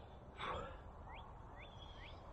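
A short breathy exhale from a man about half a second in, then faint bird chirps: short notes sweeping upward in pitch, about two a second.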